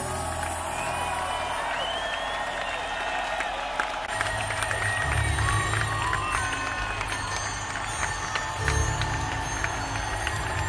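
Stadium concert crowd cheering, clapping and whistling between songs. Low sustained notes from the band's sound system come back in swells about four seconds in.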